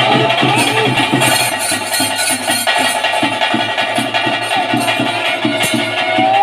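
Nadaswaram playing a held, sliding melody over rapid, steady drumming: live music for a Tulu bhuta kola (daiva kola) ritual.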